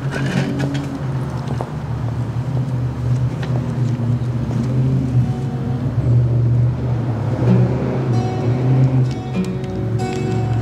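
A soft instrumental introduction on electronic keyboard and twelve-string acoustic guitar, growing fuller in the second half with guitar strums, over a steady low hum.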